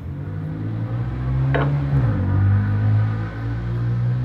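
An engine running nearby: a steady low hum whose pitch drops once about two seconds in.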